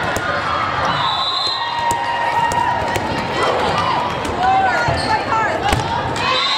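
A volleyball is struck several times in a rally with sharp slaps, the loudest near the end, over the steady babble and shouts of players and spectators echoing in a large hall. Short whistle tones sound from other courts.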